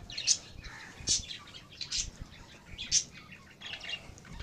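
Caged birds chirping: short high chirps about once a second, five in all.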